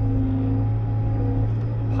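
Bobcat T66 compact track loader's diesel engine running steadily, heard from inside the cab: an unbroken low drone with a fainter, higher steady whine over it.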